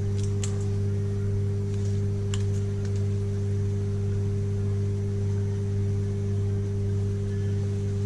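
A steady low electrical or machine hum, one deep note with fainter higher overtones, with a few faint light clicks as the metal insemination gun and its plastic sheath are handled.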